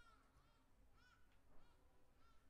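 Saxophone ensemble playing a very soft passage: a few short, high, faint notes.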